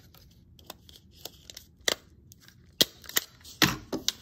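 Desktop stapler being pressed and handled on strips of paper: several sharp clacks, the loudest near the end.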